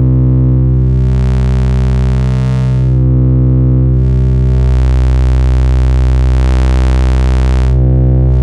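Analogue triangle and square sub-wave from a Livewire AFG oscillator mixed through the Erica Synths Fusion Tube VCO Mixer: a steady low synth drone on one pitch. Twice its upper harmonics swell in as a channel level is turned up and the tube stage clips, adding a fuzzy top that takes over the mix.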